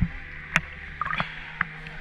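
Water lapping and sloshing around a camera held at the surface of a hot-spring pool, with one sharp splash or knock about half a second in.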